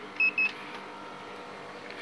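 Two short high beeps in quick succession from a handheld infrared thermometer as it takes a reading of a refrigerant pipe's temperature.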